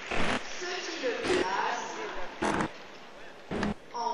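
Faint speech in the background, cut by four short puffs of noise roughly a second apart.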